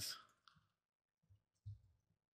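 Near silence with a few faint, short clicks of a computer mouse, two of them close together near the end.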